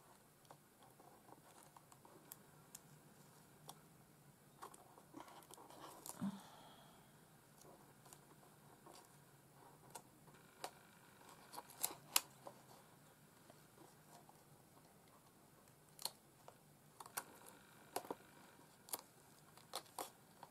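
Faint hand-sewing sounds: scattered small clicks and ticks as a needle and thread are worked through the edge of a paper-covered card panel, with a short rustle about six seconds in.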